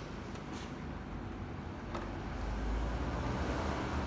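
Canon imagePROGRAF iPF771 large-format printer powering up: a steady low mechanical hum that grows louder about halfway through, with a single click near two seconds in.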